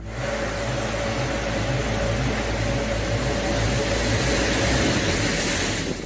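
Heavy rain pouring, picked up by a Ring doorbell camera's microphone as a steady, even hiss, with a faint steady tone underneath.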